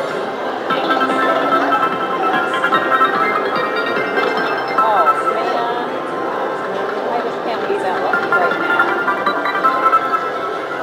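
WMS Hercules video slot machine playing its free-spin bonus music and electronic reel and win sounds as the spins pay out, with voices chattering in the background.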